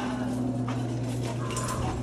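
A steady low hum with a second, fainter line an octave higher, and a few faint light clicks over it.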